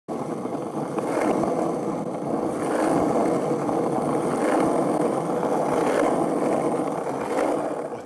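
Skateboard wheels rolling steadily over asphalt, a loud continuous rumble with faint clicks every second or so.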